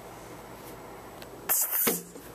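Quiet room tone, broken about one and a half seconds in by a short, loud burst of hissing noise that lasts under half a second.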